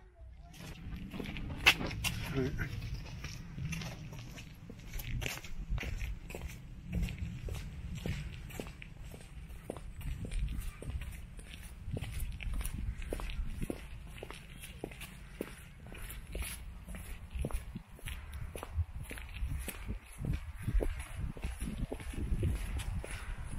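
Footsteps of a person walking at a steady pace on paving stones and garden paths, each step a short knock, over a low rumble.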